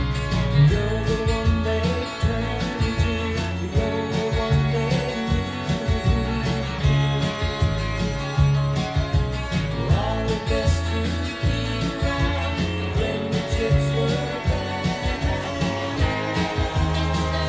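Telecaster-style electric guitar played along with a full-band country-rock recording, with bass and a steady beat underneath.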